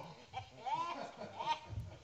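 A person's voice making two or three short, wavering non-word sounds with a bending pitch.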